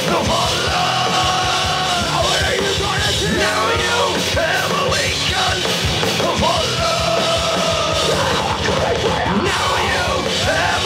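Live heavy rock band playing loud, with dense drumming and a male singer yelling and singing over it in long held notes.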